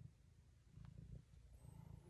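A pet cat purring faintly, a low rumble that swells and fades about once a second with its breathing.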